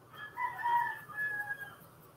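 An animal call: one drawn-out pitched cry lasting about a second and a half, rising at first and then held before it breaks off.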